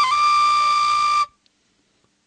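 Background film music: a flute-like wind instrument holds one steady high note, then cuts off abruptly about a second and a quarter in.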